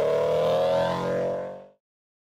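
Car engine revving sound effect: one held engine note rising slowly in pitch, fading away about three-quarters of the way through.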